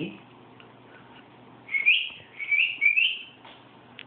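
Three short rising whistled chirps, about half a second apart, over a faint steady hum.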